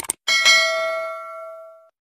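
A quick double mouse click, then a bright bell ding that starts a moment later and rings out, fading over about a second and a half: the notification-bell sound effect of a subscribe animation.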